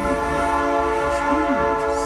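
Train horn sounding one long, steady blast: a chord of several held tones that does not waver.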